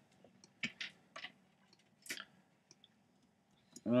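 A few faint, scattered clicks of a computer keyboard and mouse, spaced irregularly about half a second to a second apart.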